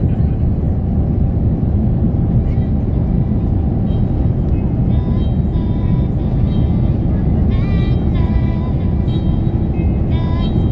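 Steady low rumble of a jet airliner rolling along the runway, heard inside the cabin: the engines and the wheels on the tarmac. A melody of music fades in over it about halfway through.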